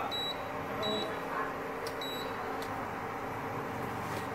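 Induction cooktop control panel beeping as its power setting is pressed up: three short, high beeps within the first two seconds, over steady background noise.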